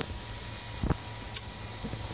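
Prusa i3 extruder feeding filament over a steady low hum, with one low thump a little before the middle and a sharp click just after it. The thumping is the extruder's drive gear not gripping the filament.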